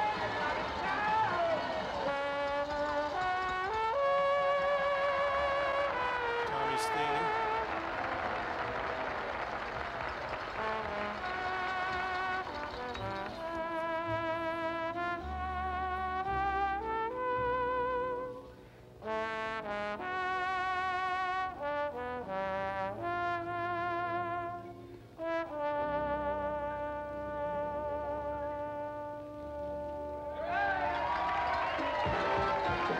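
A 1950s big band plays a slow ballad on a film soundtrack heard over room speakers. A trombone carries the melody in long held notes with a wide vibrato, pausing briefly between phrases, over a soft band backing.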